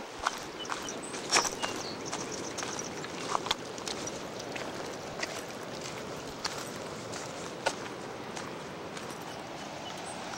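Irregular footsteps and knocks on a rough, stony path as someone walks down a slope, over a steady rushing background noise.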